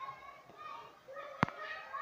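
Faint high-pitched voices, with a sharp click about one and a half seconds in.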